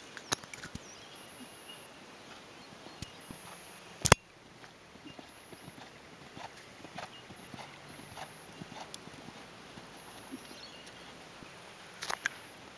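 Hoofbeats of a ridden Thoroughbred gelding on a sand arena, soft irregular thuds and clicks. A single sharp knock about four seconds in is the loudest sound.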